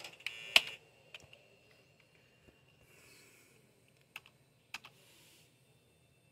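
Keypresses on a PC keyboard as it is driven into the BIOS setup: a loud cluster of clicks in the first second, then a few scattered single key clicks, with a faint steady hum underneath.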